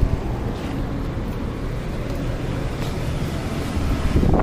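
Steady low rumble of street traffic, with a short thump right at the start.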